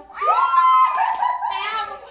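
Two young women shrieking and laughing with excitement as their song ends, with a high held cry about a quarter of a second in.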